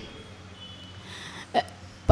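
A pause in a woman's microphone speech: low steady room hiss, with one short breath drawn about one and a half seconds in, just before she speaks again.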